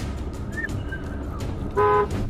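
Road traffic rumble from a truck with a low-loader trailer on a slushy road, then one short, steady vehicle horn blast near the end.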